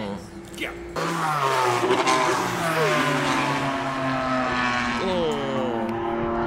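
Drift cars running on the track, starting about a second in: engine notes falling in pitch as a car passes and comes off the throttle, with a second engine running steady underneath and another drop in pitch near the end.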